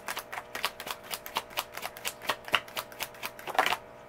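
A deck of tarot cards being shuffled by hand: a run of quick, irregular card slaps and clicks, with a denser flurry near the end.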